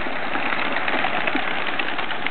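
A flock of racing pigeons taking off together from release crates: a dense, continuous clatter of many wingbeats.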